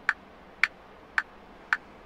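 Computer-generated metronome click track from Audacity's Rhythm Track generator playing back: four evenly spaced sharp clicks, just under two a second.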